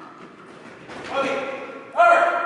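A man's voice calls out one short, loud word about a second in, with a ringing echo from a large hall.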